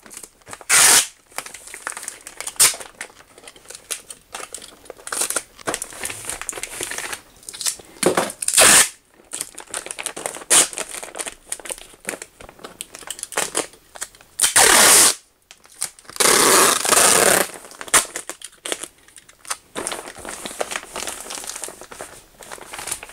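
Polyethylene vapor-barrier sheeting crinkling and sealing tape being peeled off the roll and pressed down onto the plastic, in irregular rustling and ripping bursts with a longer stretch of tape pulled out about two thirds of the way through.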